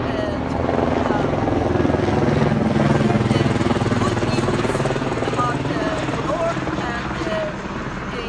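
A helicopter passing overhead, its low engine-and-rotor drone swelling to its loudest a few seconds in and then slowly fading. A voice is talking faintly beneath it.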